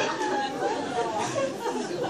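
Congregation chatter: several voices murmuring and talking at once in a large hall.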